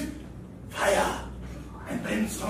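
A person makes a loud, breathy gasp about a second in, with another breathy sound starting near the end, over a faint steady room hum.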